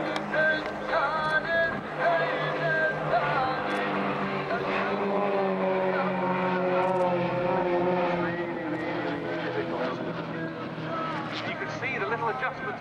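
Formation of Extra 330 aerobatic planes flying overhead, their piston engines and propellers droning with a pitch that shifts slowly lower through the middle. Display music plays over the loudspeakers at the same time.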